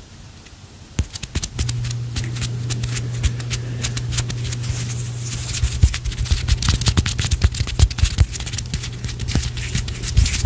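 Close-up hand sounds for ASMR: fingers and palms rubbing and fluttering near the microphone, a dense run of crackling clicks and skin swishing starting about a second in. A steady low hum runs underneath from shortly after.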